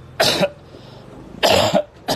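A man coughing twice, two short harsh coughs about a second apart.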